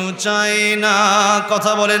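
A man's voice chanting a sermon's melodic tune into a microphone: mostly one long held note, with quick wavering turns near the end.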